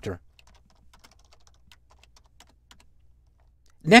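Faint computer keyboard typing: a quick, uneven run of keystroke clicks.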